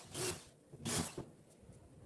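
Two short rasping scrapes, about two-thirds of a second apart, from hand work at the bottom edge of a wooden wardrobe door.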